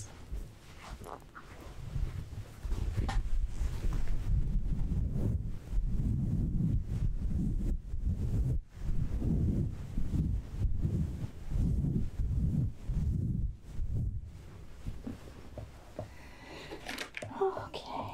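A soft cloth towel rubbed back and forth right against the microphone, wiping the excess off a hand: low, muffled rubbing in repeated strokes, roughly one or two a second. It starts about two seconds in and dies away a few seconds before the end.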